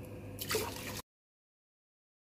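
Water poured into a stainless steel pot onto granulated sugar, with a short splash about half a second in. The sound cuts off abruptly about a second in, leaving dead silence.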